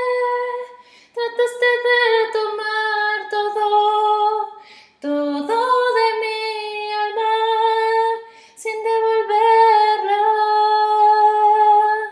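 A woman singing a slow melody in long held notes, with no accompaniment heard. The phrases are broken by short breaths about one, five and eight and a half seconds in.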